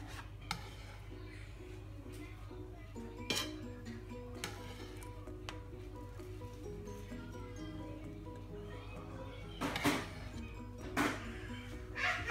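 A knife and plates clinking and knocking a few times as toasted cheese bread is cut on a plastic cutting board and moved onto a plate, the two loudest knocks near the end, over soft background music.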